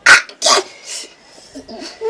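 A man crying out in pain: two short, loud yelps near the start, then softer sounds, as a cut on his arm is dabbed with a cloth.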